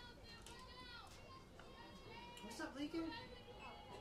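Faint, overlapping high-pitched voices calling out and chattering, the sound of softball players and spectators at the field, a little louder between about two and a half and three seconds in.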